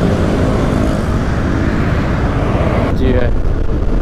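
Motorcycle running steadily while being ridden, with engine and road noise picked up by the rider's camera. A brief voice comes in near the end.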